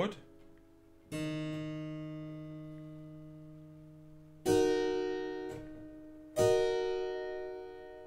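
Figured-bass chords played on a keyboard instrument: three chords, struck about a second in, at about four and a half seconds and at about six and a half seconds, each ringing on and slowly fading.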